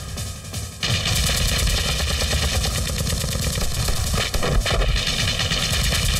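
Rapid, sustained machine-gun fire that begins abruptly about a second in and keeps going, with bullet hits kicking up dirt, over film score music.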